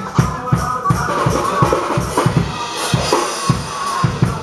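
Drum kit played live, with low drum hits about four a second and cymbals, over a band's music that carries a melody.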